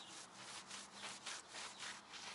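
Microfiber towel wet with mineral spirits rubbing over a tire's rubber sidewall in quick, repeated wiping strokes, about five a second, faint and scratchy. The solvent is stripping old dressing and grime off the rubber.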